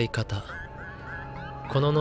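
A young man's voice reading aloud in Japanese, a few words at the start and again near the end. In between is a quieter stretch with a held steady tone and a faint wavering sound.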